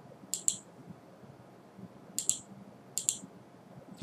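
Computer mouse clicks: three quick double clicks, one near the start and two more in the second half.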